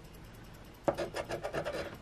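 A coin scraping the scratch-off coating from a lottery ticket: faint at first, then a run of quick back-and-forth scraping strokes from about a second in.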